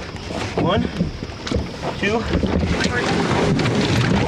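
Scuffling and knocking in a small boat as a large alligator is hauled aboard, with wind on the microphone and short bits of voice.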